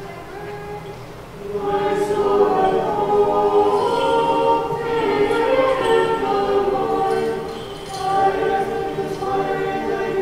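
An Orthodox church choir singing a cappella in several parts during Vespers. A quieter held chord gives way about a second and a half in to louder, fuller singing.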